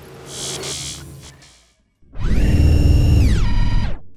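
Channel logo sting: a faint swish, a brief gap, then a loud buzzing electronic tone with a deep low end that holds, slides down in pitch and cuts off.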